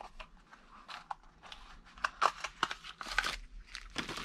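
Small cardboard box holding a wheel bearing being opened and handled: rustling and crinkling with scattered light clicks and taps, busier in the second half.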